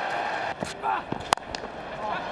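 Stadium crowd noise, then a single sharp crack of a cricket bat striking the ball about a second and a half in.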